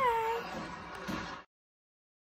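A woman's high, drawn-out sing-song farewell call that rises in pitch and is then held for about half a second. The sound cuts off to silence about one and a half seconds in.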